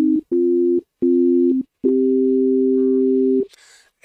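Dull sine-wave synth tones played from a MIDI keyboard controller: four notes with short gaps between, each two plain pitches sounding together, the last held about a second and a half.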